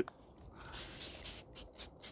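A 1951 Gillette Tech safety razor with a Platinum Strangelet blade scraping through lather and beard stubble on the cheek. One longer stroke comes about a second in, then a run of short strokes at about four a second.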